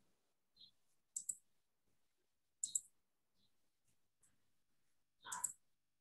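A few faint computer mouse clicks, one about a second in and a quick pair near three seconds, with a short soft sound just before speech resumes.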